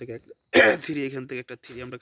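A man's voice, speech only, starting loudly about half a second in.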